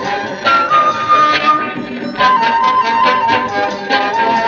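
A live roots reggae band playing an instrumental passage: a lead instrument holds long melody notes over a steady rhythmic accompaniment.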